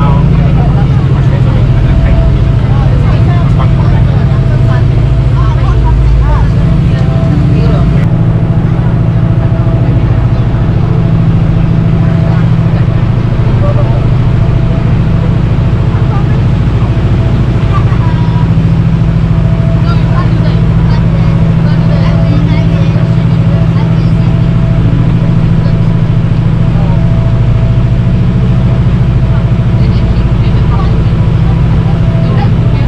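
Speedboat engine running steadily at speed, a constant low drone, with water rushing along the hull.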